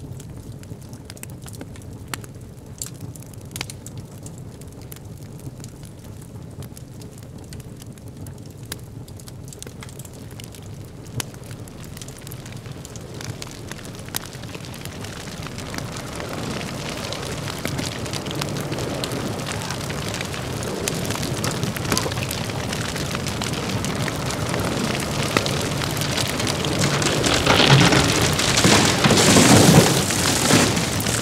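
A low hum with scattered crackles, then the noise of a rainstorm that swells steadily from about halfway through to a loud peak near the end.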